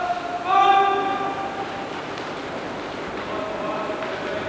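A man's drawn-out shouted commands to a karate class, each call held long on one pitch. A loud call starts about half a second in and lasts about a second, and a fainter one comes near the end.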